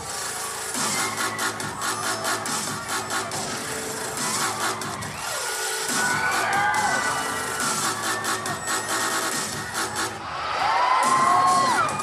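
Music playing loud, with an audience cheering and screaming over it. High-pitched screams rise and fall throughout and swell loudest a second or two before the end.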